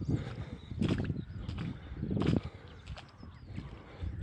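Footsteps on wet concrete runway slabs, a step about every three quarters of a second, growing quieter after about two and a half seconds.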